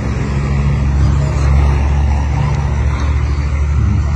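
A motor vehicle engine running, a steady low drone that swells slightly around the middle.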